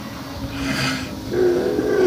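A woman's breathy laugh: a sharp, hissy breath out, then a held, voiced sound.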